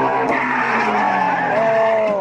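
Ford Mustang's engine running at high revs as it launches, with its tires squealing under wheelspin. A higher squeal rises and then falls near the end as the car slides sideways.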